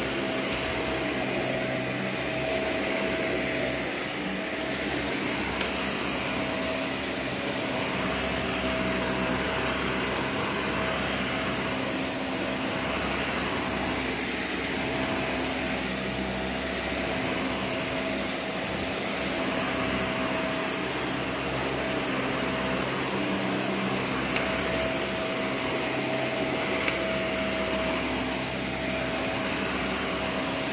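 Dyson vacuum cleaner running steadily over carpet, a continuous motor sound with a steady high whine and a few faint ticks scattered through.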